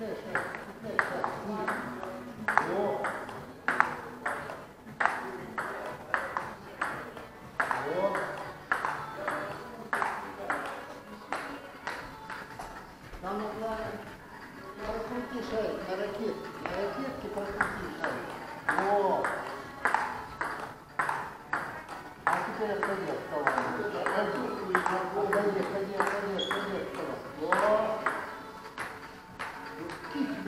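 Table tennis rally: the celluloid ball clicks off the bats and the table about twice a second, with short breaks between points. One player's backhand is played with anti-spin rubber. There are shouts of "O! O! O!" late on.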